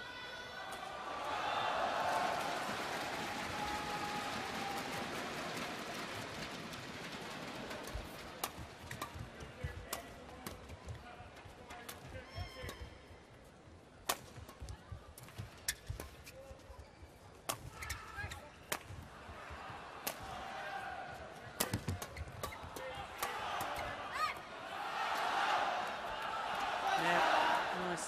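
Badminton rally in an indoor arena: rackets striking the shuttlecock in a run of sharp cracks, roughly one a second through the middle, with shoes on the court. Crowd cheering and applause at the start and again near the end as points are won.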